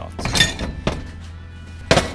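Aluminium engine parts, a two-stroke crankcase half and cylinder, being handled and set down on a metal workbench: a short clatter about half a second in, then a sharp knock near the end as a part meets the bench.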